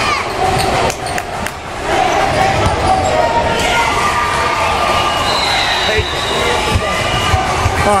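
Basketball game sounds on a hardwood gym floor: a ball bouncing and sneakers squeaking as players run, with voices of players and spectators around them.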